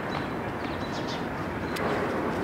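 Steady background hum of distant city traffic, with no single event standing out.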